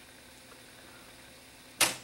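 Sansui SC3300 cassette deck rewinding quietly, then a single sharp mechanical clunk near the end as the memory-counter stop halts the transport.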